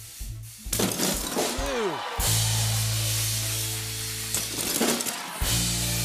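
A thrown football smashes a glass panel. The glass shatters about two seconds in, with long, steady low music notes sounding under it.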